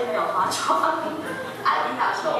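A woman speaking in a lively, high voice, played back from a projected documentary into the room.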